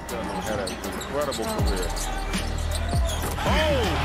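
Basketball game audio: a ball bouncing on a court, with short squeaking glides typical of sneakers on hardwood. A steady low hum comes in about a second and a half in.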